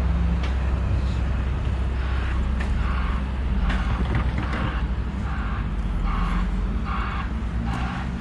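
Outdoor street ambience at a snowy road intersection: a steady low rumble of traffic and wind on the microphone, with a run of short, evenly spaced softer sounds about every half second.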